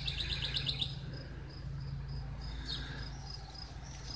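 Outdoor birdsong: a songbird's fast trill falling in pitch for about the first second, then a thin high note repeated two or three times a second, with one short downward call near the end.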